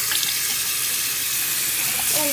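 Bathroom sink faucet turned on: the water comes on abruptly and runs in a steady stream onto hands and into the basin.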